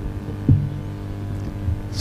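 Steady electrical hum from a public-address sound system, with one brief sound about half a second in.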